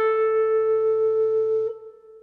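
Rhodes electric piano, sampled from a 1976 Rhodes Mark I Stage Piano, holding a single note with an even, pulsing tremolo over a soft low bass note. Both cut off about 1.7 s in, leaving a brief near-silence.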